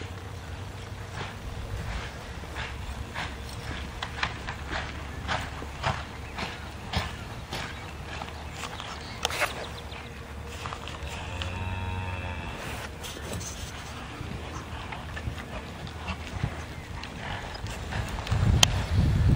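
Hooves of a cutting horse on soft arena dirt: irregular footfalls as it steps, stops and turns while working cattle, over a low steady rumble.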